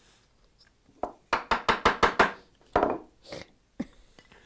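Hand-pushed bench chisel paring wood on a dovetail joint. About a second in comes a quick run of about seven short, crisp cuts, then two longer scraping cuts near the end.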